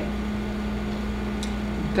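Steady background room hum: a constant low drone over a faint rumble, with one faint tick about one and a half seconds in.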